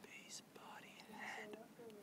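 Faint whispered speech: a person whispering a few words.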